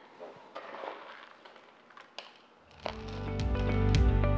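Soft rustles and small clicks of chunky orchid-bark potting mix being pressed by hand around a seedling in a plastic pot. About two-thirds of the way through, background music fades in and becomes the loudest sound.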